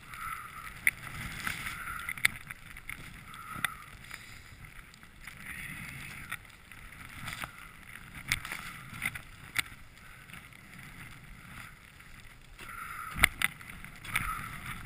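Skis swishing and hissing through deep powder snow, swelling and fading turn by turn, with wind rumbling on the microphone. Scattered sharp clicks run through it, with a louder cluster of knocks near the end.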